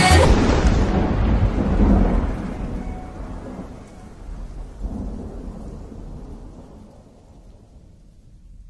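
Rolling thunder rumble that fades away over about eight seconds, swelling again briefly about five seconds in.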